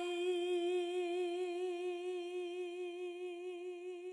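A woman's voice holding one long unaccompanied note with a gentle vibrato, slowly fading.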